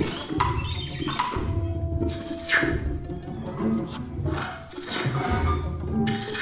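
Contemporary chamber ensemble with live electronics playing a sparse, fragmented passage of short knocks and percussive strikes over a low rumble, with one held tone for about a second partway through.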